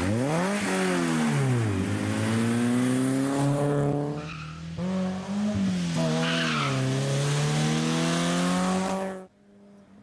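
BMW 3 Series (E30) rally car's engine revving hard under acceleration, its pitch swinging up and down with throttle and gear changes. The engine note dips briefly about four and a half seconds in, then pulls again and cuts off abruptly near the end.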